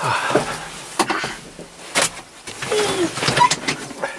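Knocks, clicks and rattles of people moving about and settling into a Massey Ferguson tractor cab, with the cab door and fittings being handled. The engine is not running.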